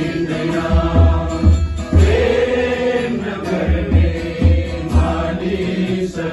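A man singing a worship song in a chant-like style over instrumental backing with a low pulsing beat.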